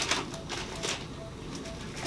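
A short sharp clack at the start, then soft rustling, under a faint short beep that repeats about two to three times a second.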